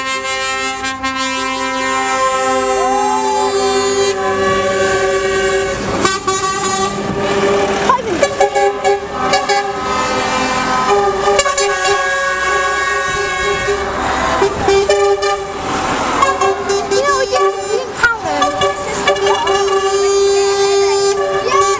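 Truck air horns sounding almost without a break, several at once in overlapping held notes that change every few seconds, as a line of lorries passes close by.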